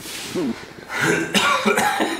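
A person coughing, with brief voice sounds: a noisy burst at the start and a louder one from about a second in.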